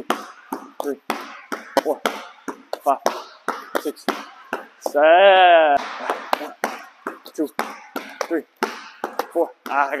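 A basketball dribbled hard and fast on an indoor sport-tile court, about three bounces a second, with a foam roller slapping at the ball and hands. About five seconds in there is a loud, drawn-out squeal that rises and then falls.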